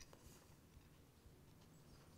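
Near silence: room tone with faint, soft mouth sounds of a man chewing a bite of fish.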